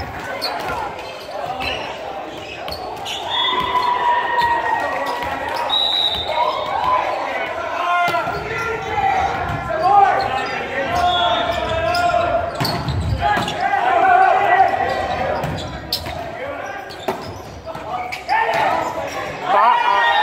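Indoor volleyball rally in an echoing gymnasium: players and spectators shouting and calling over one another, with sharp thuds of the ball being struck. The shouting swells near the end.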